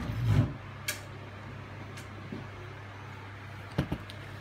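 Handling noise from the snow machine's plastic pipe housing being moved and knocked on a workbench: a heavy thump at the start, a couple of sharp clicks, and two quick knocks near the end, over a steady low hum.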